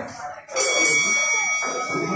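A fight timer's electronic buzzer sounds one steady tone, starting about half a second in and still going at the end. It signals the start of a round, with crowd voices underneath.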